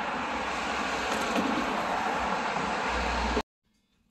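Steady outdoor traffic noise from a busy road, with wind rumbling on the microphone; it stops suddenly about three and a half seconds in.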